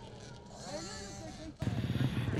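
Distant motocross dirt bikes running on the track, their engine pitch rising and falling as they are revved. About a second and a half in, this cuts off suddenly to a louder, steady low hum.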